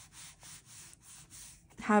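Soft, faint rustling of thin planner pages being turned and smoothed down by hand, several light brushes of fingers over paper in a row.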